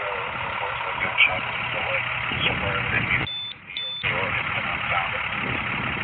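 Indistinct voices of people talking nearby over a steady low engine hum, like an idling vehicle. A little past halfway the sound briefly drops out, with two short high beeps.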